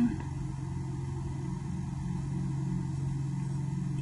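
A steady, low background hum, unchanging throughout.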